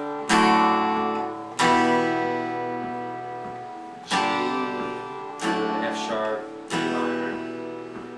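Steel-string acoustic guitar strumming about six single chords, each left to ring and fade: the chorus line G, D with F sharp in the bass, then E minor.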